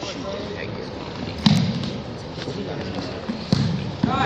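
Two dull thuds about two seconds apart, over faint voices echoing in a large gym.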